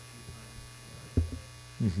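Steady electrical mains hum on the microphone feed, with a short low thump about a second in.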